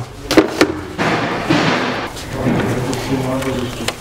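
A few sharp knocks and clicks of plastic engine-bay parts being handled by hand, then a scraping, rustling noise.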